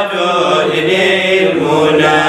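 A man chanting an Arabic devotional poem (qasida, inshad) in long, held melodic phrases.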